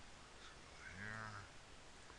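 A man's brief wordless hum or 'uh' about a second in, low-pitched and lasting about half a second, over faint steady hiss.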